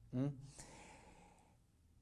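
A man's short questioning "mm?", followed by a soft breath in that fades out within about a second.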